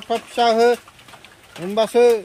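Speech: a person talking in short phrases, with a pause between.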